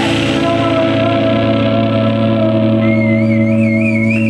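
Electric guitars and bass holding one loud, ringing chord with no drums, the closing chord of a noise-punk song. About three seconds in, a high warbling feedback tone comes in over it.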